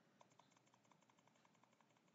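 Near silence with faint, rapid computer-mouse clicks at about six a second, as an on-screen arrow button is clicked repeatedly to step a value up.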